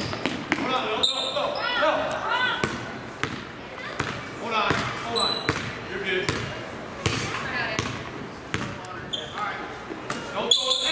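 Basketball dribbled on a hardwood gym floor, the bounces ringing in the hall, with sneakers squeaking in short bursts as players cut. Spectators and players talk and call out underneath.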